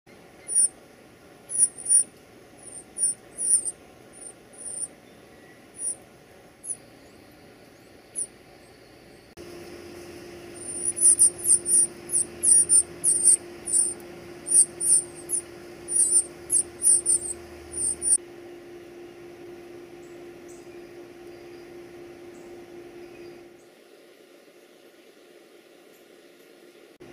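Northern cardinal nestlings begging at feeding time: short, very high, thin peeps repeated in scattered bursts, then in a fast, dense run for several seconds in the middle. A faint steady hum runs underneath from about ten seconds in until a few seconds before the end.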